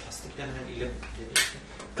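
A single sharp click about one and a half seconds in, over faint low voices.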